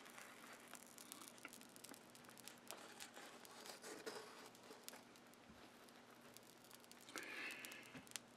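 Near silence with faint, scattered crackling from Kasenit case-hardening powder fusing onto red-hot low-carbon steel, and a slightly louder rustle near the end.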